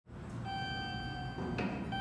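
Logo-intro sound effect: a pitched electronic chime held for about a second, a brief swish, then a second chime of the same pitch starting near the end.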